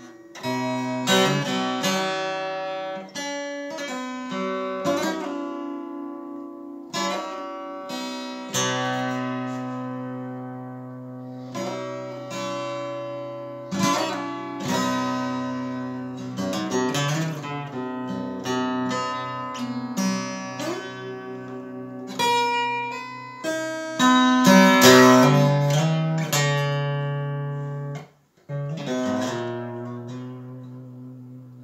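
Solo guitar playing: plucked single notes and chords strike and ring out, one after another. The playing stops for a moment about two seconds before the end, then picks up again.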